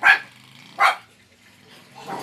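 A dog barking twice, two short sharp barks a little under a second apart.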